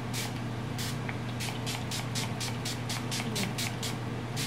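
Fine-mist pump spray bottle of green tea and hyaluronic facial toner spritzed over and over: more than a dozen short hissing puffs, closest together in the middle at about four a second, over a steady low hum.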